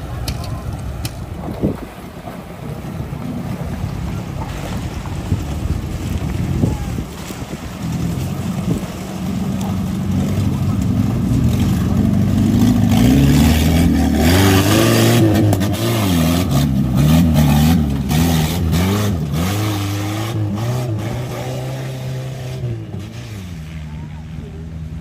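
A vintage flat-fender military-style jeep's engine revving as the jeep drives through a shallow river, its pitch rising and falling. The engine builds to its loudest about halfway through, with water splashing, then fades near the end.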